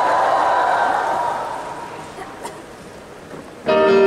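Audience cheering and applauding, dying away over the first couple of seconds. Then, about three and a half seconds in, a piano comes in with a held chord.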